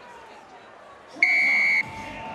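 A stadium buzzer sounds once, a steady high electronic tone lasting about half a second, starting just past the middle, over low crowd ambience.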